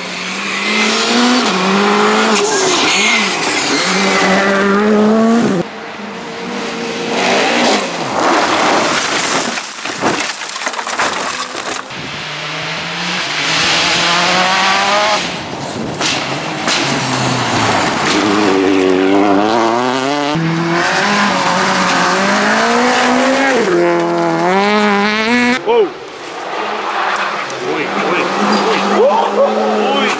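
R5 rally cars, turbocharged four-cylinders, running flat out on a gravel stage, one after another. The engines rev up and fall back sharply through gear changes over the hiss and spray of loose gravel, and the sound breaks off suddenly several times as one car's pass gives way to the next.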